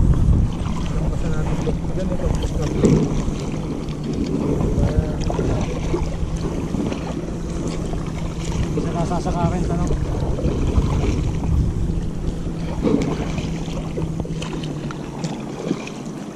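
Wind on the microphone and water washing against a small boat, over the steady low hum of a boat engine that stops shortly before the end, with handling noises as a fish is worked in a landing net.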